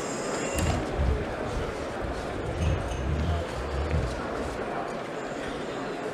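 Background chatter of a crowd in a large hall, with a few low thumps in the first half.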